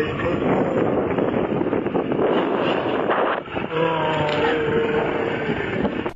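Motor scooter on the move, its engine mixed with a dense rush of wind and road noise. The rush dips briefly a little past halfway, then a steadier droning tone takes over.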